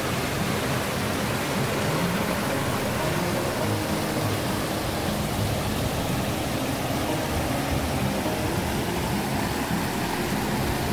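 Mountain river rushing and splashing over boulders in small cascades, a steady, unbroken rush of water.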